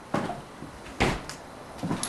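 Three sharp knocks about a second apart, each with a short ringing tail in a hard-walled room.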